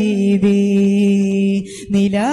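A solo voice singing a madh ganam, a Malayalam Islamic devotional song, without accompaniment: one long note held steady, then a short breath about one and a half seconds in before the next phrase begins.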